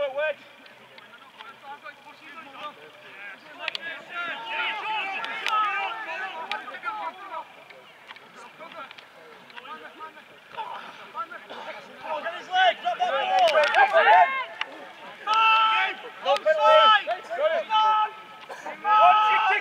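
Several voices shouting across an open rugby field during play. The shouts are scattered and faint at first, then louder and more frequent in the second half.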